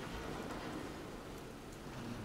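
Faint, echoing room ambience inside a large stone cathedral, with a few soft ticks like footsteps on the stone floor.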